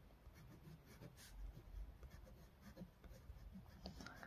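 Faint scratching of a pen drawing short strokes on notebook paper, otherwise near silence.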